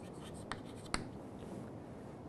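Chalk writing on a chalkboard: a few quiet taps and strokes of the chalk, the sharpest about a second in.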